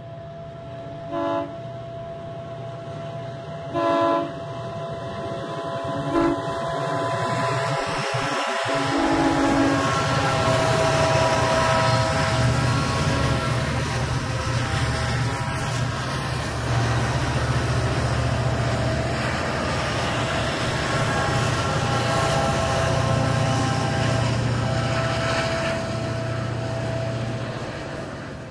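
A lashup of diesel freight locomotives passing close by. Three short horn blasts sound over the rumble of the approaching train in the first six seconds, the middle one the longest. From about nine seconds in, the loud steady drone of the engines and the rolling cars takes over as the units go past.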